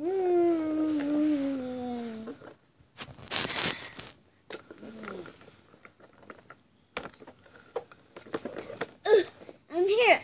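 A young girl's voice making play sounds: a long wail falling in pitch for about two seconds, then a short hissing burst about three seconds in. Small handling noises follow, and brief rising vocal sounds come near the end.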